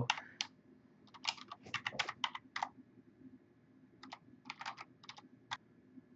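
Computer keyboard typing in two short, uneven runs of keystrokes, with a pause of about a second and a half between them.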